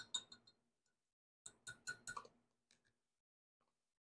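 Small metal measuring spoon tapped against the rim of a glass measuring cup to knock off leftover pearl powder: a quick run of light ringing clinks at the start and another about a second and a half in.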